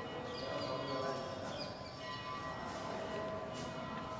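Bells ringing, several lasting tones sounding together over a background hubbub.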